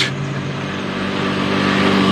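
Motor scooter riding up the road and passing close by, its engine and tyre noise growing steadily louder as it nears.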